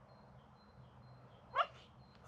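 A Finnish Spitz gives a single short bark about one and a half seconds in.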